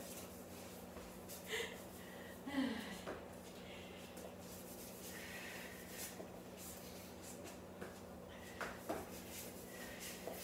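A few short exhales and grunts of effort from a woman doing kneeling squat get-ups, the strongest about two and a half seconds in, with soft scuffs of shoes and knees on a foam mat, over a steady low hum.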